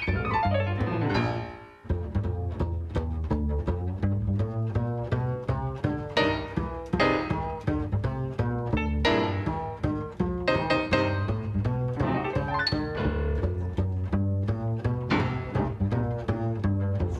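Grand piano and plucked upright double bass playing a fast swinging jazz duo, the bass walking under quick piano lines. About two seconds in they stop together for a short break, then play on.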